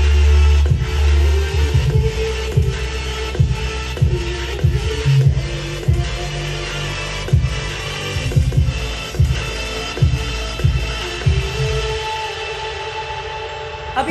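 Electronic dance music with heavy bass and a steady beat, played through a Blaupunkt 130 W soundbar and wireless subwoofer. The deep bass drops away near the end.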